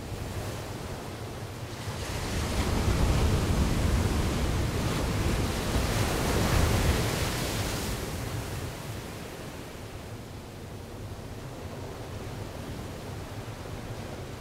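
Rough sea surf breaking and washing in a steady rush of noise. It swells to its loudest from about two to eight seconds in, then eases off.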